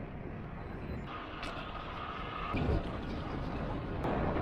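Steady wind and rolling noise of a road bike ridden on asphalt, picked up by a bike-mounted action camera. A faint thin whine rises out of it about a second in and stops halfway through.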